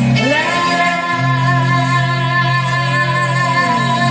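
A female vocalist singing live through a PA over backing music, swooping up at the start and then holding one long steady note.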